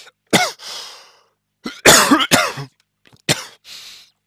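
A man coughing: one cough about a third of a second in, a longer, louder fit of several coughs around two seconds in, and two more coughs near the end.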